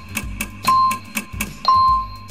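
Background piano music with a quiz countdown timer beeping once a second over fast ticking; the last beep, near the end, is held longer as the count runs out.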